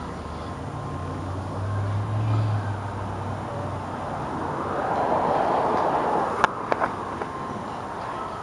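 A car's engine running nearby, a low hum that swells and then fades away over the first half. It is followed by a rushing noise and a few sharp clicks near the end.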